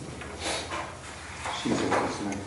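Short, indistinct human vocal sounds in two bursts, the louder one near the end.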